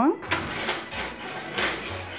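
Spatula scraping thick cake batter out of a stainless steel mixing bowl into a baking pan: several rasping strokes.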